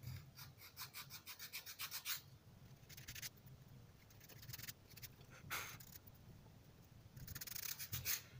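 Sandpaper glued to a plywood strip scraped back and forth over a small plywood figure, rubbing off the sticky layer left by tape. Faint; a quick run of strokes, about five or six a second, for the first two seconds, then a few shorter bursts.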